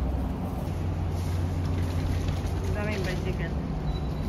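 Steady low rumble, with a brief voice about three seconds in.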